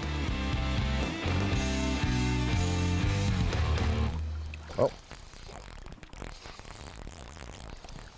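Background music with a low, stepping bass line for about four seconds, then a quieter spinning fishing reel being cranked on a steady retrieve, a soft rapid ticking.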